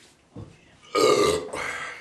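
A man's loud burp about a second in, lasting just under a second and loudest at its onset, after drinking malt liquor.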